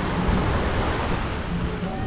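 Small surf washing onto a sandy beach, a steady rushing noise, with wind rumbling on the microphone.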